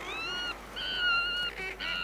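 Guillemot chicks calling: about three high, whistled peeps, each roughly half a second long with a slight rise or waver, and a short stuttering call between them, over a low steady drone.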